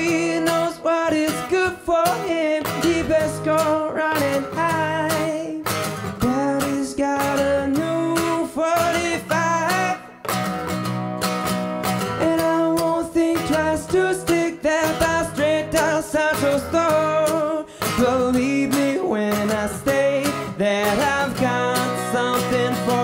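A man singing a song with a strummed acoustic guitar accompaniment, performed live.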